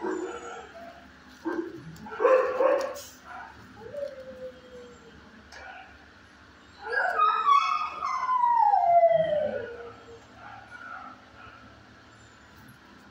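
A dog howling: a few short whines early on, then one long howl about seven seconds in that falls steadily in pitch over some three seconds. A brief noisy burst comes about two seconds in.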